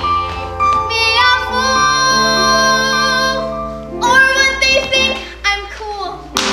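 A girl singing a solo musical-theatre song over instrumental accompaniment. She holds one long note from about a second in until past the middle, then starts a new phrase.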